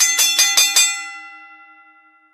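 Bell-like chime sound effect: a quick run of struck notes, about five a second, whose tones then ring on and fade away.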